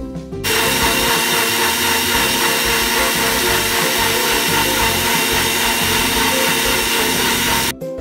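Sujata mixer-grinder blender running at full speed, churning milk, banana chunks, peanut butter and sugar into a shake. It starts about half a second in, holds a steady motor whine, and stops abruptly just before the end.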